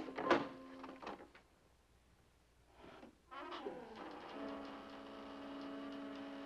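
Tense dramatic underscore. A few sharp knocks or clicks in the first second, then near quiet, then a scuffing noise. About four seconds in, a long held suspense chord begins and sustains.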